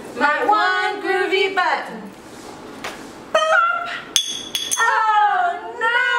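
Mostly women's voices: the end of a sung children's-book refrain, then a drawn-out exclamation sliding down in pitch. About four seconds in, a short, sharp high-pitched squeak marks the story's last button popping off.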